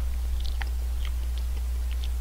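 A person chewing a mouthful of curry, with a few short wet mouth clicks, over a steady low hum.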